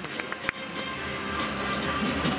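Music over a stadium's public-address system, with a few hand claps from the crowd in the first half second.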